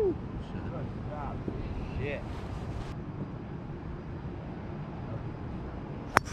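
A short vocal exclamation right at the start, then a steady low outdoor rumble with faint, scattered voices.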